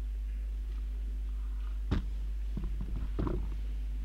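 Steady low electrical hum on the old concert recording, broken by one sharp knock about two seconds in and a few softer knocks and shuffles a second later, as of a pianist settling at the piano bench before playing.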